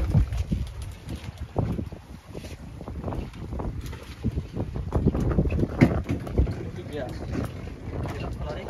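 Wind rumbling on the microphone aboard a small open boat on choppy sea, with scattered short knocks.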